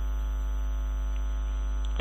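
Steady electrical mains hum and buzz in the recording chain: a low drone with a ladder of even overtones, unchanging throughout.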